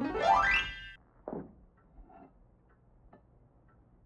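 Film soundtrack: a quick, comic rising pitched glide like a boing, lasting under a second, then a short faint note and low, scattered small sounds.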